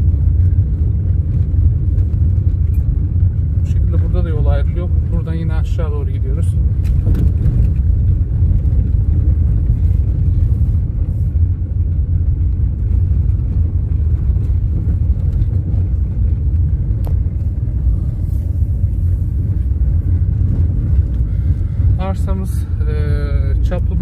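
Car driving slowly on a gravel dirt road, heard inside the cabin: a steady low rumble of tyres and engine with occasional small ticks.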